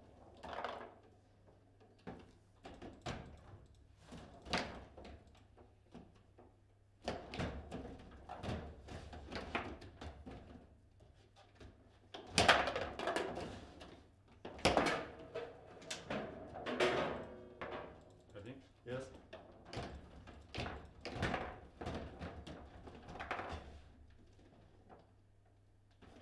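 Table football play: irregular sharp knocks and clacks of the ball being struck by the rod-mounted plastic figures and hitting the table, the loudest about twelve seconds in.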